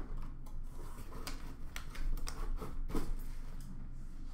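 Scattered light clicks and taps of hands handling a cardboard memorabilia box and fitting its lid on, over a steady low room hum.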